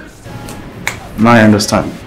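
A man's voice says a short phrase past the middle, with a sharp click just before it.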